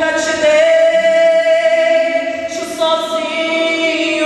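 Gospel singing amplified through a church PA system, with long held notes and a brief break about two and a half seconds in.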